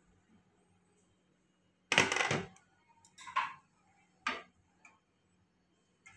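A glass pot lid set down with a clatter about two seconds in, followed by a few short clinks of a steel ladle against the pan and the hot rasam.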